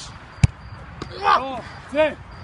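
A sharp thud of a football being struck hard, about half a second in, the loudest sound, with a fainter knock about a second in. Two short shouts follow.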